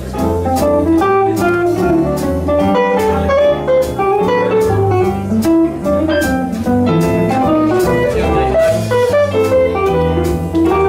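Small swing jazz band playing live, with an archtop guitar taking the lead over double bass, drums and piano.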